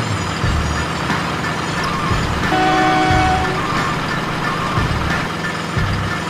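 Diesel truck engine sound running with an uneven low rumble under the RC Hino truck as it drives, with background music. A brief steady tone sounds about two and a half seconds in.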